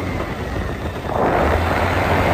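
Small moped engine running with a low steady hum, and a rushing noise that swells just over a second in.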